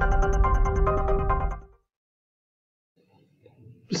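Short intro music sting with a held tone under a run of quick high plinks. It ends abruptly under two seconds in and is followed by silence.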